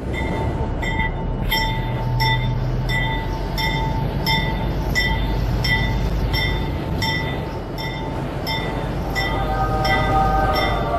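Subway train running on rails: a steady rumble with a regular clack about every two-thirds of a second. Near the end a whine starts to rise in pitch.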